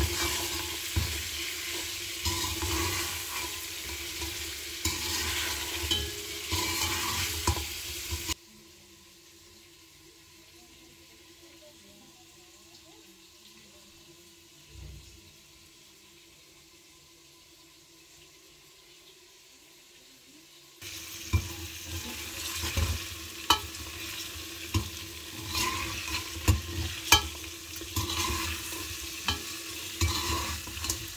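Mutton frying in ghee in a metal pot, sizzling as a ladle stirs and scrapes it, with sharp knocks of the ladle against the pot. For about twelve seconds in the middle the frying drops out and only a faint low hum remains.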